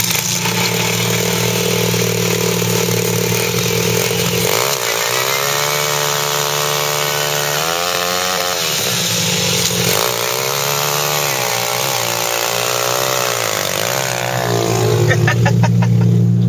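Small 50cc pit bike engine revved hard through a rear-tyre burnout, the revs climbing and holding high twice, for about four seconds each time, with lower running between them and near the end.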